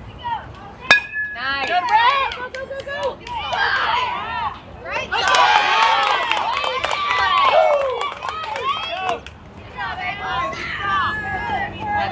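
A bat hits the ball with one sharp crack about a second in. Many voices, children's and adults', then shout and cheer, loudest in the middle and easing off near the end.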